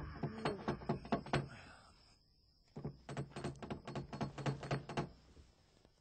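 Rapid knocking on a door in two runs: a short burst at the start, then a longer, faster run from about three seconds in.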